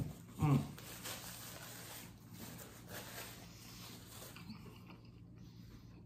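A click, then a short closed-mouth 'mm' of approval, followed by faint, wet chewing and mouth noises from someone eating chicken nuggets, fading out about four and a half seconds in.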